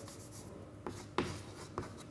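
Chalk writing on a chalkboard: a few short, quiet taps and strokes of the chalk as symbols are written.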